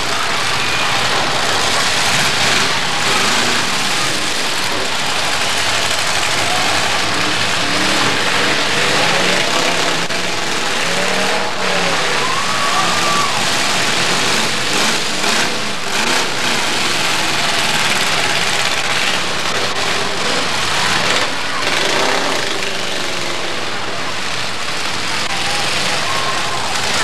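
Demolition derby cars' engines running and revving together in a dense, steady din, with crowd noise from the stands mixed in.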